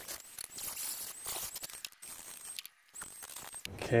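Faint, scattered light clicks and clinks of a thin metal channel ramp being handled and set in place, with a brief gap near the middle.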